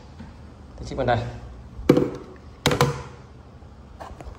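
Two sharp knocks a little under a second apart, the loudest sounds here, with a short spoken word just before them.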